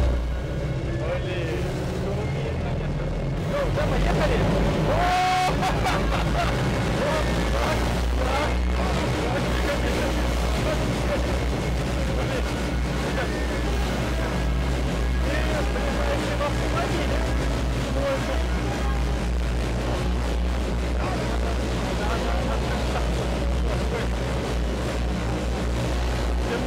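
Electric rotors of an XPeng AeroHT X2 flying car running, heard from inside its cabin as a steady low hum with a higher drone over it. The sound grows louder about four seconds in as the rotors spool up for take-off.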